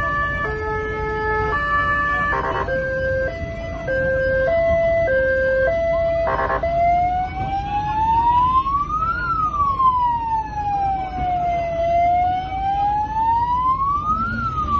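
Police car siren sounding loudly in a pattern of stepped alternating tones, with two brief harsh bursts. About six and a half seconds in it changes to a slow wail that rises, falls and rises again. A low road rumble runs underneath.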